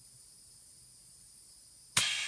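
Quiet room tone, then right at the end a sharp click as compressed air is let into the sealed two-stroke crankcase through the gauge fitting, and the air starts to hiss.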